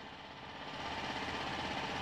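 A steady, low engine running in the background, with an even pulsing throb that grows a little louder over the first second and then holds.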